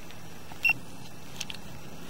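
A single short, high electronic beep from the sewer inspection camera's recording unit over a steady hiss, followed about a second in by two faint ticks.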